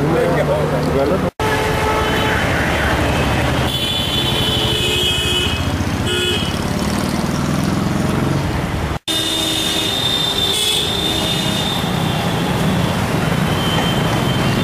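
Road traffic noise with vehicle horns tooting now and then, the sound dropping out abruptly twice at edits.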